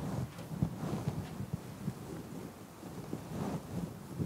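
Faint, low room rumble with a few soft, scattered knocks.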